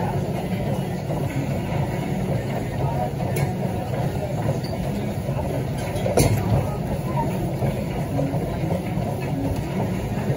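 Busy gym ambience: a steady low rumble of room noise with indistinct background voices, and a sharp knock about six seconds in.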